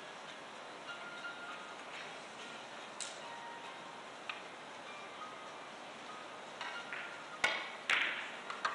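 Quiet billiards-hall room tone with a few scattered, faintly ringing clicks of carom balls striking on neighbouring tables, then two louder sharp clicks about half a second apart near the end.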